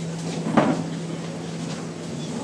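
A single sharp knock a little over half a second in, with a brief ring, over a steady low held tone that stops just before the end.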